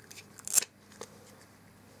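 Hard plastic toy tongs setting a plastic ice-cream scoop onto a plastic toy cone: a short plastic scrape and clack about half a second in, then one light click about a second in.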